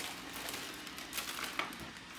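Plastic grocery bag and plastic packaging rustling and crinkling quietly as groceries are lifted out of the bag.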